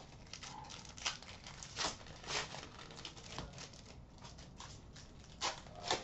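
Hockey trading cards and their foil pack wrappers being handled: quiet, scattered short rustles and crinkles as packs are torn open and cards are sorted.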